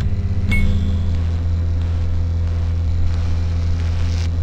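Steady electrical hum of a neon-sign sound effect, a low hum with several overtones, with a small ding about half a second in.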